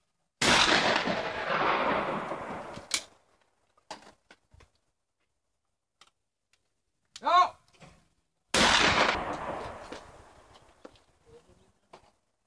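Break-action shotgun fired at a clay target: a sharp shot that rings out and dies away over about two seconds, followed by a few clicks as the gun is handled and broken open. Near the end a short shouted call for the next clay is followed about a second later by a second shot that rings out the same way.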